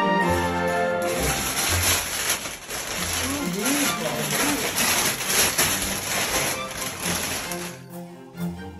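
Paper gift bags and tissue paper rustling and crinkling as presents are unpacked, over background music. The rustling cuts off suddenly just before the end.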